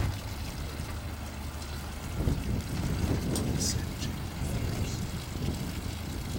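Tow boat's engine idling with a steady low hum, opening with a brief knock and joined by a louder rush of noise from about two seconds in.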